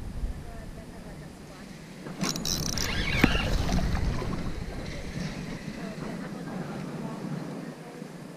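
Wind buffeting the microphone, with handling noise and sharp clicks from a spinning reel being worked, loudest from about two to four seconds in.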